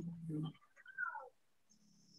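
A cat meowing once about a second in, a short faint call that falls in pitch.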